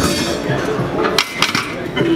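Two sharp metal clinks from a loaded barbell and its iron plates on the bench-press rack, a quarter second apart, a little over a second in.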